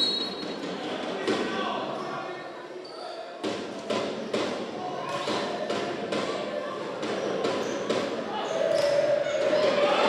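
Volleyball rally in an echoing indoor sports hall: a run of sharp smacks and thuds from the ball, starting about three and a half seconds in, over steady crowd chatter.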